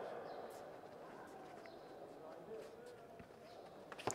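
Faint sports-hall background: a low hiss with faint, indistinct voices in the distance and no clear event.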